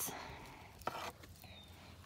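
Faint handling noise of a small package being opened, with one short rustle about a second in and a few light ticks near the end.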